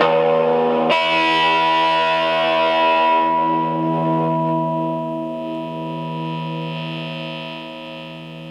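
Electric guitar chord strummed once and left to ring through a Strich Tsunami blues overdrive pedal into a small Orange amp, with a distorted tone that slowly fades. The sound turns brighter about a second in and darker again after about three seconds as the pedal's tone knob is turned.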